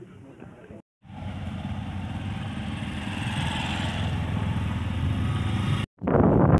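A motor vehicle's engine running steadily with a low, even hum, growing a little louder. It starts abruptly about a second in and cuts off just before the end.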